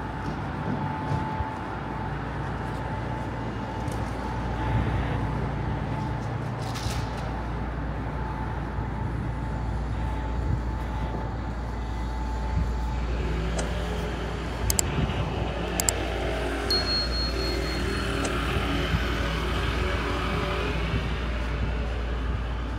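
Night-time city street ambience: a steady low rumble of road traffic, with a vehicle engine growing louder in the second half. A short run of high electronic beeps sounds about seventeen seconds in.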